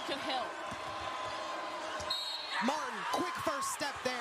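Basketball being dribbled on a hardwood court, a run of sharp bounces over steady arena crowd noise, with curving squeaks and calls rising and falling in the second half.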